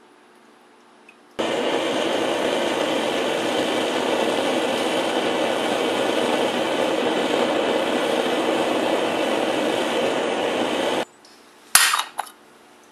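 Propane burner firing a small homemade coffee-can forge: a loud, steady rushing noise of the gas jet and flame that starts and stops abruptly. Near the end, a sharp metallic clink.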